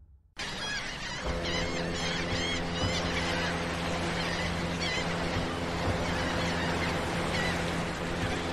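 Seaside ambience laid under a channel intro: a steady wash of surf with repeated bird calls over it, cutting in suddenly just after the start, joined about a second in by a sustained low drone.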